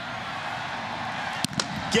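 Stadium crowd noise, steady, with one sharp knock about one and a half seconds in.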